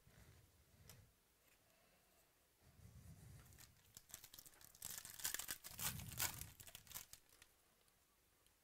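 Foil wrapper of a 2018 Panini Prizm football card pack being torn open and crinkled by hand, with a run of crackling from about halfway through that dies away near the end.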